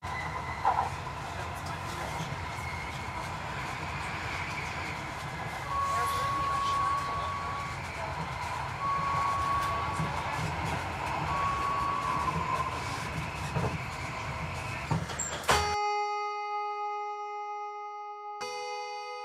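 Recorded ambience of a busy place opening the track: a low rumble with indistinct voices and three long, even beeps in the middle. About 15 seconds in it cuts off suddenly, and ringing plucked-string notes take over.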